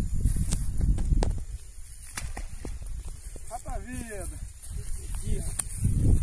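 Wind buffeting the microphone outdoors, strongest in the first second and a half and again near the end, with a few sharp knocks and a short burst of a voice near the middle.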